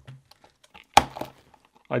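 A thin plastic box cover cracking with one sharp snap about halfway through, as a utility knife is rocked along a line of perforations. A few faint clicks from the knife come before it.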